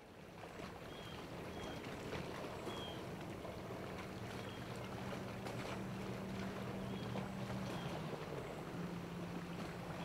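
Lakeside ambience fading in: a motorboat engine's steady low drone over outdoor background noise, its tone shifting briefly about eight seconds in, with a few faint high chirps.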